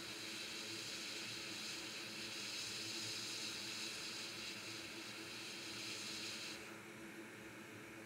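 Hot air rework station blowing a steady, faint hiss of hot air at close range onto a micro BGA chip, reflowing its solder balls with the airflow set to about 70%. The hiss drops away about a second before the end as the air comes off the chip.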